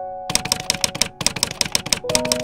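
Typewriter-style key clicks in a quick run, about eight a second, starting a moment in, over background music with a few held notes.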